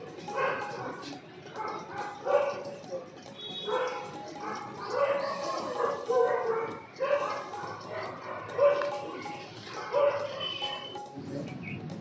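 A dog barking repeatedly, short barks about once a second, over people's voices.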